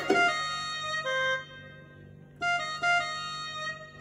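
Yamaha PSR-E473 keyboard playing a short phrase in F major: a few notes struck at the start that ring down to a lull, then more notes a little past the middle.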